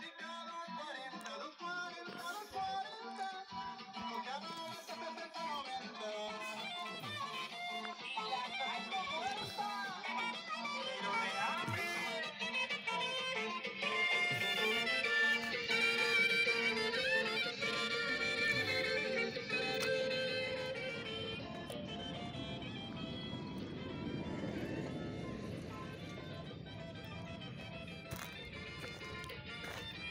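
Music with plucked strings, somewhat louder in the middle.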